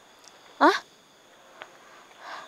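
A short, loud vocal cry, 'ah', rising steeply in pitch about half a second in.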